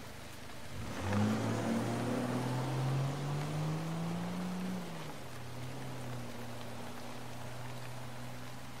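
Steady rain sound effect with a low droning tone entering about a second in; the drone rises slowly in pitch, falls back after a few seconds and then holds steady.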